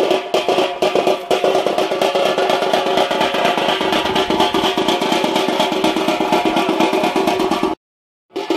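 Fast, even drumming with a steady pitched tone held above it, typical of festival percussion music. It cuts out abruptly for about half a second near the end.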